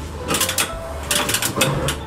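Gas hob burner igniter clicking in quick runs of sharp ticks, a short run early and a longer one from about a second in, as the burner is lit.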